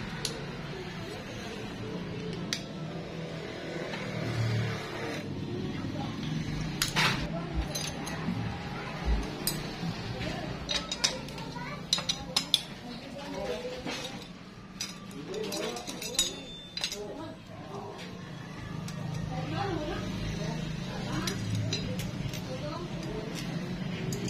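Scattered light metallic clinks and taps of tools and small metal engine parts being handled during motorcycle engine reassembly, over a steady low hum.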